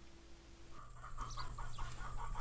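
Chickens clucking faintly, a run of short repeated calls starting about a second in.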